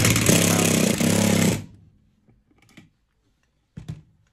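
Makita 18-volt cordless driver running in two short bursts as it drives a screw into an aluminium frame, stopping about a second and a half in. A brief knock follows near the end.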